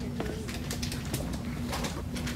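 Shopping cart being pushed across a hard store floor: wheels rolling with a steady low hum and rumble, and frame and basket rattling in short sharp clicks.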